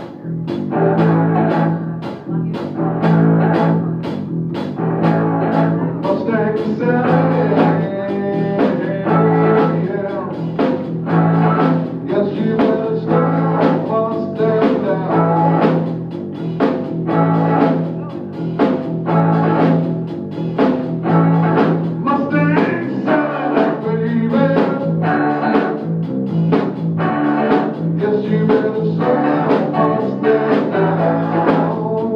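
Live band of electric guitar, electric bass and drum kit playing a song with a steady beat and a droning bass line, started off a count-in.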